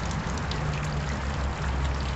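Water running in a stone garden fountain: a steady, even splashing rush, with a low rumble underneath.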